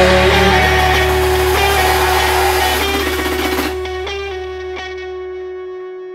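The song's final held chord, distorted electric guitar and bass, ringing under a wash of cymbals. The cymbal wash cuts off sharply a little past halfway, and the chord keeps ringing and fades out.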